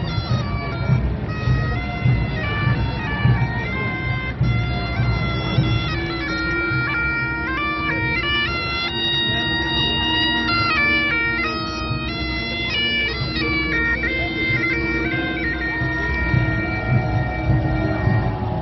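Great Highland bagpipe playing as the piper marches past: the chanter melody steps between held notes over a steady drone, which sounds out clearly from about five seconds in.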